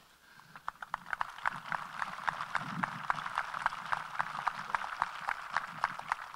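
Crowd applauding. Scattered claps begin about half a second in and quickly fill out into steady applause.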